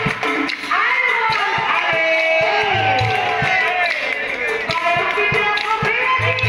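Assamese nagara naam: a woman's voice sings and chants a devotional melody with sweeping pitch glides, over frequent sharp percussion strikes, with a short low drum boom about three seconds in.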